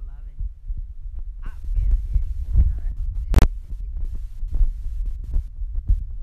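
Handling noise from a phone microphone as the phone is carried and swung: a low rumble with uneven thumps, and one sharp knock about three and a half seconds in.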